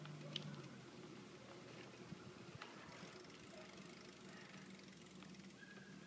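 Near silence: a bicycle rolling quietly on a paved road, with a few faint clicks.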